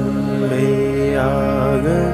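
A voice chanting a Sanskrit mantra in a slow, melodic line over a steady musical drone.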